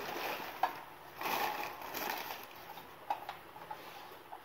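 Crumpled packing paper rustling and crinkling as a heavy toy truck is pulled out of a cardboard box, loudest in the middle, with a few light clicks.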